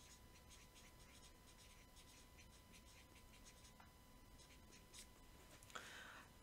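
Faint scratching of a felt-tip highlighter marker writing a word on a lined notepad, in many short strokes.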